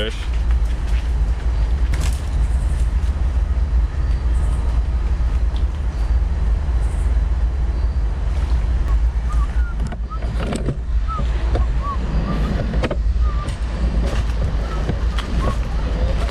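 Wind rumbling on the microphone: a steady, loud low roar, with a few short high chirps between about ten and thirteen seconds in.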